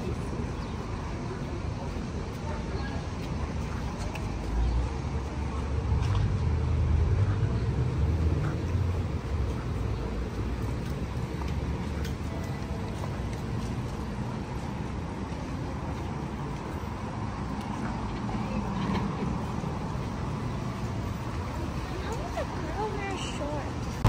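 City street traffic noise: a steady wash of car engines and tyres, with a heavier vehicle's low rumble swelling and passing about four to nine seconds in.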